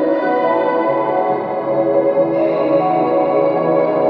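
Slow ambient background music of long held notes, moving to a new chord about halfway through.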